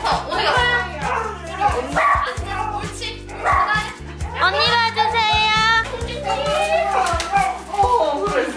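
Border collie whining and crying in a run of short, pitch-sliding vocal cries, with a higher, wavering cry around the middle. Background music with steady low notes plays underneath.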